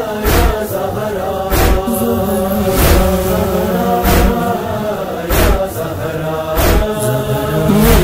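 Male voices chanting a sustained chorus of a noha with no words made out, kept in time by a deep thump about every second and a quarter: the beat of chest-beating (matam).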